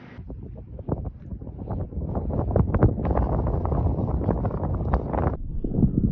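Wind buffeting the microphone in rough, uneven gusts. It starts abruptly and grows louder over the first few seconds.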